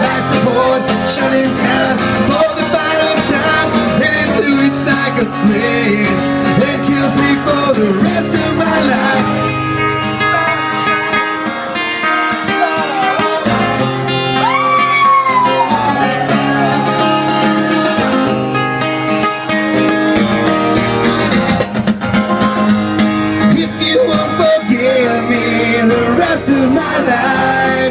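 Live solo acoustic guitar, strummed steadily, with a singing voice; about halfway through a voice holds a long note that slides down in pitch.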